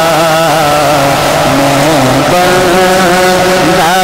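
A man singing a naat into a microphone, drawing out long wavering notes without words over a steady low drone. He moves to a new held note a little past two seconds in.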